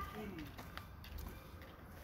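Quiet street ambience with a steady low rumble, and a brief faint voice in the first half second.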